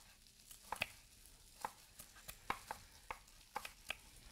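Chef's knife slicing green onions on a wooden cutting board: about a dozen sharp, irregular knife taps on the board.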